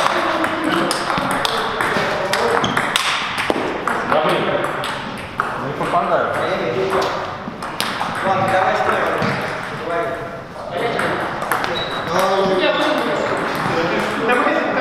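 Table tennis ball clicking off the paddles and bouncing on the table in rallies, a run of sharp quick ticks, with a pause between points partway through. Voices talk over it throughout.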